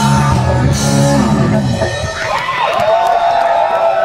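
Live punk rock band with electric guitars and drums, and a singer at the microphone, playing the closing bars of a song. The full band stops about two seconds in, and a held tone that wavers in pitch rings on.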